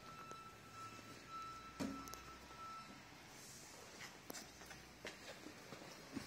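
Near silence: quiet workshop room tone with a faint steady high tone in the first half and a few soft clicks.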